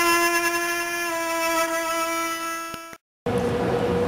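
Background music: a slow violin line of long held notes that step down in pitch, fading out just before three seconds in. After a brief dead silence at a cut, faint outdoor background noise.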